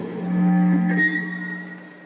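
A low held instrumental note from the band on stage, with a higher sustained note joining about a second in, the sound fading away toward the end.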